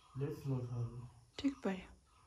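Speech only: a voice talking, ending in a short "Why?" near the end.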